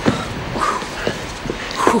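People panting and huffing out short breaths, out of breath from climbing up, with light footsteps.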